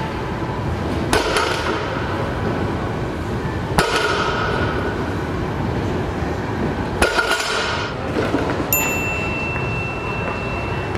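A loaded barbell clanging down on a gym floor three times, roughly three seconds apart, as deadlift reps are set down, over steady gym background noise. A steady high tone starts near the end.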